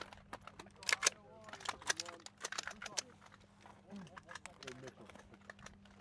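A quick, irregular series of faint, sharp clicks and knocks, loudest about a second in.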